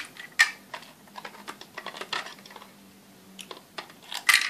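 Irregular small plastic clicks and taps as the opened plastic case of a toy quadcopter's radio controller is handled and turned over. The sharpest click comes about half a second in.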